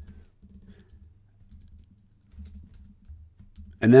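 Typing on a computer keyboard: faint, soft keystrokes in short runs with brief pauses.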